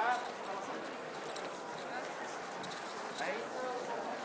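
Street ambience of passing pedestrians talking briefly, over a steady hum of city noise, with a few sharp clicking steps on the pavement.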